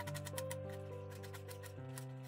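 Soft background music with held chords that change twice. Under it, faint regular clicks of a knife chopping onion on a plastic cutting board.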